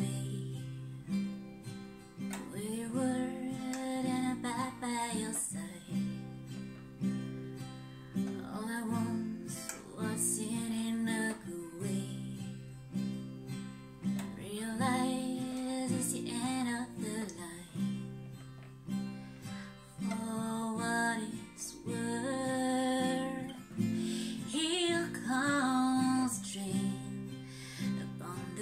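Acoustic guitar strummed in a slow, steady accompaniment, with a woman singing the melody over it in phrases.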